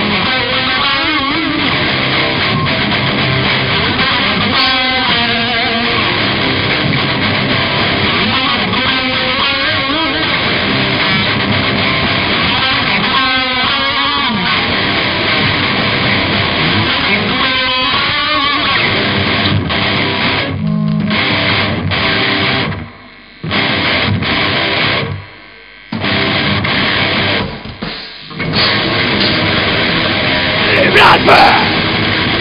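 Live heavy metal band playing an instrumental passage: distorted electric guitars, bass and drums. Near the end the band stops dead three times for short breaks before coming back in.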